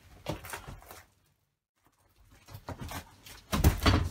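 Cardboard guitar shipping box being picked up and handled: scrapes, rustles and dull knocks. There is a brief break of dead silence about a second in, and the knocks grow louder near the end.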